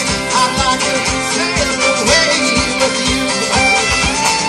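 Live band playing an instrumental passage with no vocals: fiddle, guitar and drums, with a steady drum beat about twice a second.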